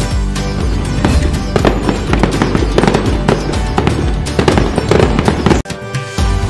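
Rapid firecracker bangs and crackling over background music, cutting off suddenly near the end.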